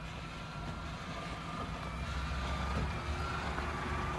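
A just-parked Peugeot SUV sitting with its power on: a low steady rumble that grows slightly louder, with a faint thin high tone above it, typical of the parking sensors' warning tone.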